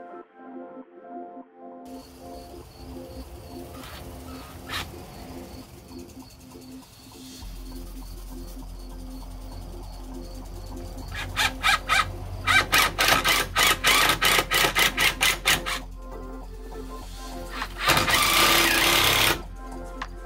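Cordless drill driving pocket-hole screws into a wooden bench frame: a rapid run of clicks for about five seconds from the middle on, then a steady run of about a second and a half near the end, over background music.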